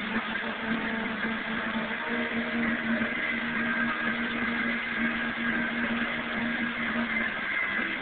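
Fountain jets splashing steadily, with music playing underneath.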